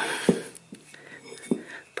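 A few faint, irregular clicks and light knocks as an old front wheel hub bearing assembly, packed with fresh grease, is turned by hand.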